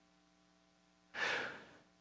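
A man's single audible breath picked up by the pulpit microphone about a second in, over a faint steady electrical hum.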